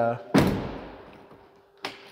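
GMC MultiPro tailgate's inner gate released and dropping open, a single loud clunk about a third of a second in that rings away over about a second. A short faint click follows near the end.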